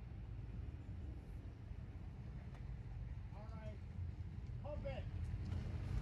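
Quiet steady low rumble of background noise, with a person's voice heard faintly twice, about three and a half and five seconds in.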